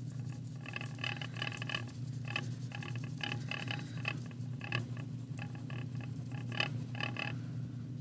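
Wax crayon colouring back and forth on paper: a run of short scratchy strokes, about four a second, with a few brief pauses.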